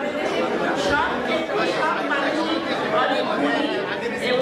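Speech only: a woman talking into a microphone.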